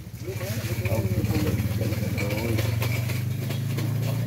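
An engine running steadily close by, a low pulsing hum that grows louder over the first second and then holds at an even pitch, with voices talking over it.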